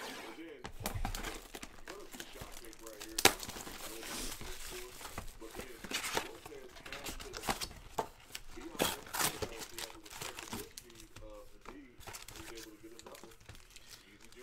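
A cardboard trading-card hobby box is torn open along its perforated lid, then foil card packs crinkle and rustle as they are handled and pulled out. The noise is irregular, with a sharp snap about three seconds in.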